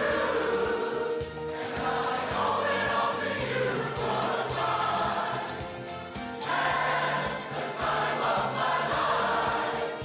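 Large pops chorus singing in harmony, holding long chords, with a brief dip in loudness about six seconds in.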